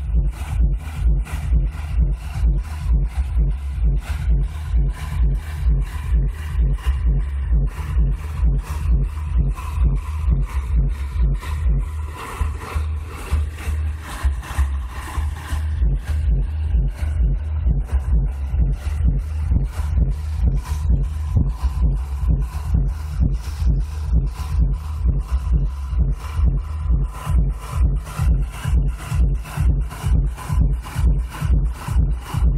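Dance music with a heavy bass beat at about two beats a second, loud and steady, with a brighter melody coming up in the middle.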